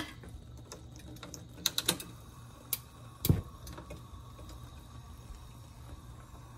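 A pot of water at the boil on a gas stove gives a faint steady background. Over it come a few scattered light clicks and one duller knock about three seconds in, from kitchenware being handled.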